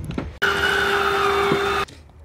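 An RV slide-out motor running as the trailer's slide retracts: a steady electric whine over mechanical noise. It starts suddenly about half a second in and cuts off abruptly just before the end.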